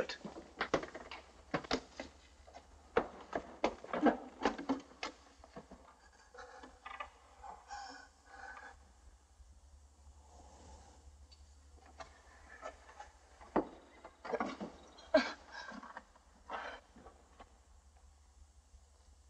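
Irregular knocks, taps and scrapes on wood in a small room. They come in two spells, in the first few seconds and again late on, with a quieter stretch between.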